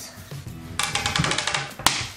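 A plastic game die clattering as it is rolled across a marble tabletop: a quick run of sharp clicks about a second long, then a single louder tap near the end, over background music.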